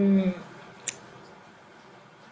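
A woman's drawn-out spoken vowel trailing off, then a single brief sharp click just under a second in, over quiet room tone.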